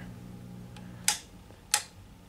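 Two sharp clicks of toggle switches on a tube amplifier chassis, about two-thirds of a second apart, as the amp is switched off. The amp's low mains hum fades out with the first click.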